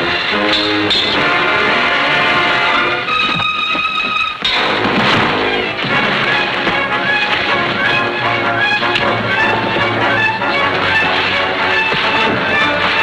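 Loud orchestral film-score music, busy and dramatic. About three seconds in, a high held chord sounds alone and breaks off a second and a half later, before the full orchestra comes back in.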